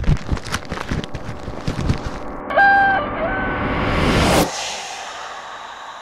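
Logo-sting sound effects: a quick run of clicks and knocks, then a short rooster crow about two and a half seconds in, followed by a rising whoosh that cuts off suddenly, leaving a fainter steady drone.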